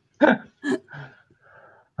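A few short bursts of laughter in the first second, trailing off into softer breathy exhales.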